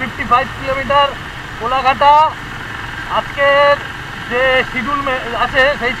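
A person's voice talking, over the steady running of a motorcycle and its road noise.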